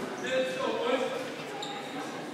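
Players' voices calling out on a volleyball court, echoing around a large gymnasium, with a ball bouncing on the hardwood floor.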